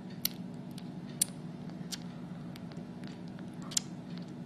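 Newborn Himalayan kitten suckling at a small feeder, making a few sharp wet clicks spread out over a steady low hum.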